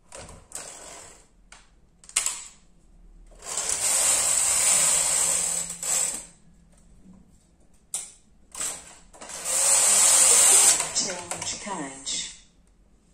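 Brother KH930 knitting machine carriage pushed across the needle bed twice, a hissing, rasping slide each time, the first lasting about three seconds and the second shorter, near the end. Clicks and knocks of the carriage and levers come between the passes.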